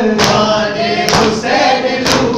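Men chanting an Urdu noha (mourning lament) together, with loud chest-beating slaps (matam) keeping the beat. Two slaps fall about a second apart.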